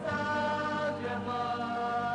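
Sung music: a group of voices holding a long, steady chord.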